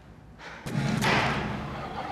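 A sudden thump a little over half a second in, followed by a louder swell that fades away over about a second.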